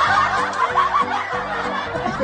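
Several people snickering and chuckling over background music with a repeating bass line.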